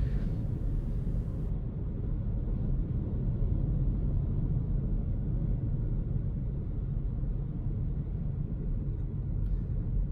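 Steady low rumble of tyre and road noise heard inside the cabin of a moving Hyundai Kona Electric.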